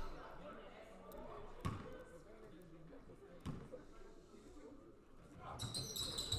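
A basketball bounced twice on a hardwood gym floor, about two seconds apart, as a free-throw shooter dribbles before his second shot. Faint gym chatter runs underneath.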